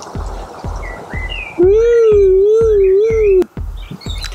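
Background music with a steady low beat and a few short chirps. A loud held note that wavers in pitch comes in about one and a half seconds in and cuts off after about two seconds.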